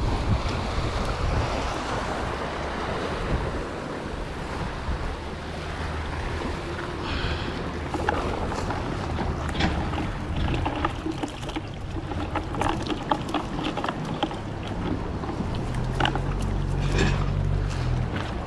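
Steady wind on the microphone and waves washing against a rock jetty, with scattered small clicks and rustles from a monofilament cast net being shaken out by hand. The clicks come more often from about eight seconds in.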